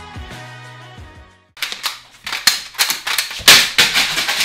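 Outro music with a steady bass line that stops about a second and a half in. After a brief gap comes a loud run of irregular clattering bangs and knocks of hard objects, the loudest about three and a half seconds in.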